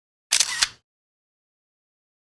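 A camera shutter click, a quick double snap with a short whir, heard once, sharp and bright, in otherwise dead silence.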